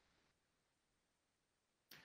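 Near silence: only a faint, even background hiss.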